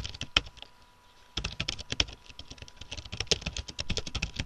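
Typing on a computer keyboard: a few keystrokes, a pause of about a second, then a fast, continuous run of keystrokes.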